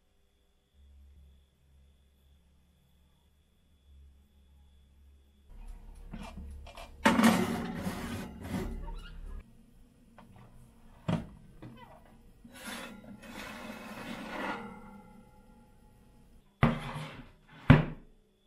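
After a few quiet seconds, a domestic oven is worked by hand: clattering and scraping of the oven door and rack with a clay baking dish, a single sharp knock, a stretch of rattling, and two loud knocks near the end.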